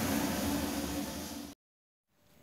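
Steady hiss-like background noise that dips a little, then cuts off abruptly to dead silence about one and a half seconds in, as at an edit.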